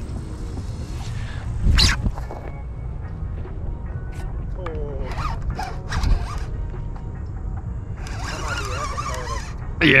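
Faint, indistinct voices over a steady low rumble, with a single knock about two seconds in.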